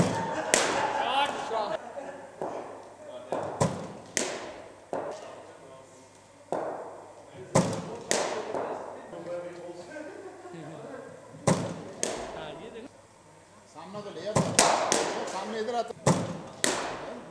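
Cricket balls knocking on bat and pitch in an indoor net: sharp knocks coming in pairs about half a second apart, roughly every four seconds, echoing in a large hall, with faint voices behind.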